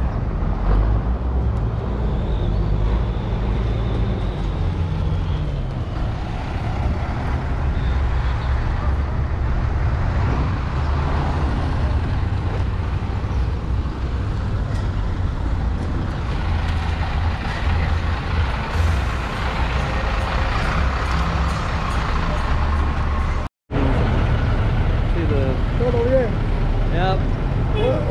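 Low, steady running of bus engines, with people talking in the background and voices close by near the end.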